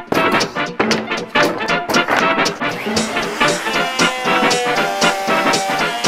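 Upbeat instrumental background music with a quick, regular beat and some held notes.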